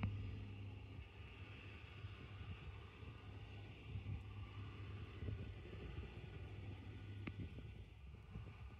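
John Deere 4955 tractor's diesel engine running steadily under load as it pulls a 30 ft air drill, a faint low drone.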